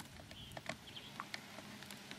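Quiet outdoor background with a few faint scattered clicks and ticks.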